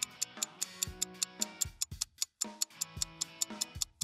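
Quiz countdown music: a fast, steady clock-like ticking over a short looping tune, which drops out briefly near the middle.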